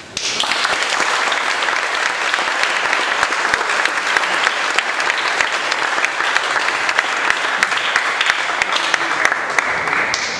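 An audience of about a hundred applauding, many hands clapping in a dense, steady patter that starts suddenly and dies away near the end.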